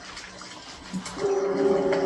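Film soundtrack: watery gurgling and splashing, then a long low held note begins a little over a second in and grows louder.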